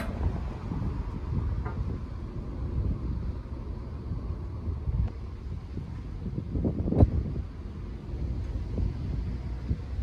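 Wind rumbling on a handheld microphone outdoors, with a single sharp knock about seven seconds in.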